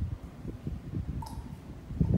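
Low handling bumps and knocks at a worktop, with one short light clink a little over a second in, as a dropper and small glass jars are handled.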